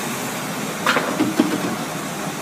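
Car engine idling steadily under the open hood, with a brief sharp sound about a second in.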